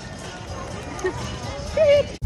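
Outdoor crowd noise picked up on a handheld phone while walking, with a low rumble on the microphone and faint voices in the background. A short rising voice is heard near the end.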